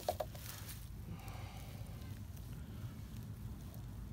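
Faint rustling and crackling of a mesh dip net being handled by hand, with two sharp clicks right at the start, over a low rumble of wind on the microphone.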